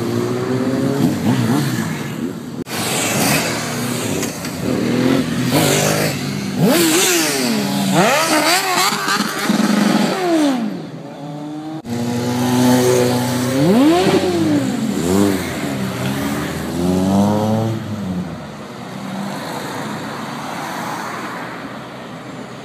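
A stream of motorcycles and scooters riding past close by, one after another, their engines revving and each rising then falling in pitch as it goes by. The last few seconds are quieter, steady traffic noise.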